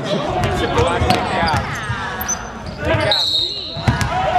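A basketball bouncing on a wooden gym floor, a few irregular low thumps, under voices echoing in the hall. About three seconds in there is a short, steady high tone.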